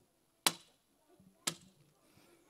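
Two sharp knocks, about a second apart.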